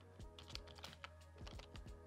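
A handful of quiet, scattered keystrokes on a computer keyboard as a short name is typed, over faint background music.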